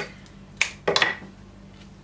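Florist's scissors snipping a flower stem: a sharp snip about half a second in, then another quick click or two about a second in.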